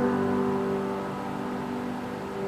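Church music: a sustained instrumental chord held after the singing has stopped, slowly fading.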